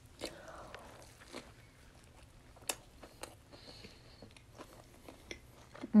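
Close-miked chewing of a mouthful of Whopper Jr burger: soft wet mouth clicks and smacks scattered through, with a hummed "mm" right at the end.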